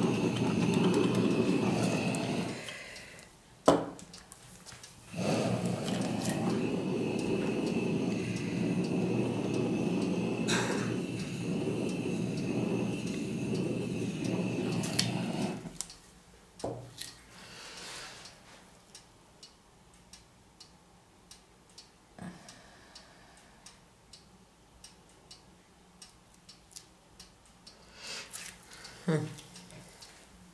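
Handheld gas torch flame running with a steady hiss and a faint high whistle, played over wet acrylic paint to make the metallic colours react. It stops a couple of seconds in, a sharp click sounds, then the flame runs again for about ten seconds and cuts off, leaving only light handling clicks.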